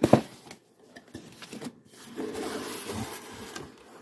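A cardboard mailer box being opened by hand: a sharp knock at the start, then about a second and a half of cardboard scraping and rubbing as the lid is pulled open.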